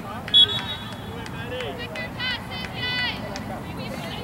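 Distant, high-pitched shouts and calls from players and spectators across a soccer field, over steady open-air background noise, with a brief loud high-pitched sound about half a second in.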